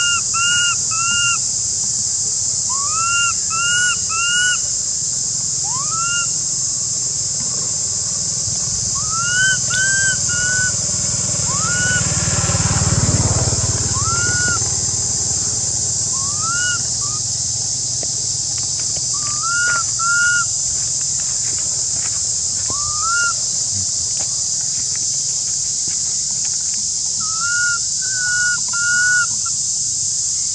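A baby long-tailed macaque giving short, rising whistle-like coos, singly or in runs of two or three, over and over, with a steady high drone of insects behind. A low rumble swells and fades near the middle.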